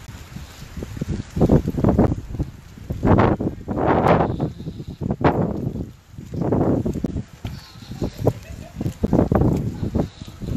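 Indistinct human voices in irregular bursts close to the microphone, with low wind or car rumble underneath.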